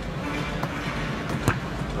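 Arena crowd noise with music under it, broken by sharp knocks of basketballs, the loudest about one and a half seconds in.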